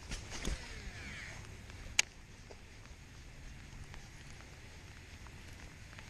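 Baitcasting reel during a cast and retrieve: a sharp click at the start, a faint whir of the spool, another sharp click about two seconds in, then a low, steady sound of the reel being cranked.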